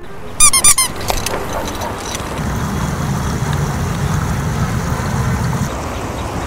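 A quick run of about six high-pitched squeaks about half a second in, then steady low outdoor background noise.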